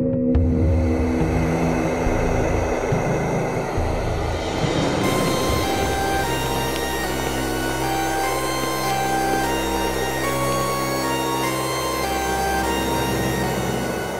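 Suspenseful background music: a low, rushing swell for the first few seconds, then a figure of short, high notes over a sustained low drone.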